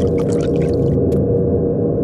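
A low, sustained droning background score with one steady held tone and no beat. Light clinking and rattling sounds over it during the first second.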